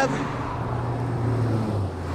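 Steady low rumble of road traffic inside a concrete road tunnel, its hum dropping a little lower near the end.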